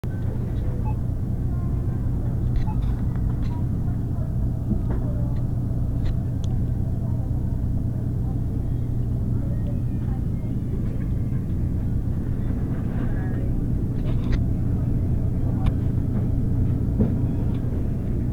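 Steady low hum of a refrigerated display case running, with faint scattered clicks.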